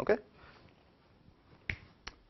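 A short, loud sound right at the start, then a single sharp click about a second and a half later, in a small room.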